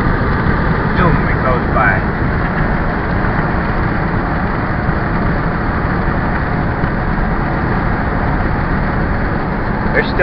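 Steady road and engine noise heard from inside a car's cabin while driving at highway speed.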